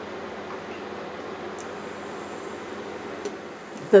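A steady, even rushing noise, like a fan running, with no change in level.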